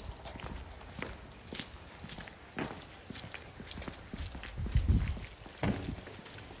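Footsteps of several people walking on wet paving, a run of short shoe scuffs and knocks. A louder low thump comes just before five seconds in, and a smaller one shortly after.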